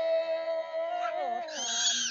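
A woman's voice holds one long sung note in Red Dao folk style, then slides down in pitch about a second in. Near the end a brief loud high-pitched cry breaks in.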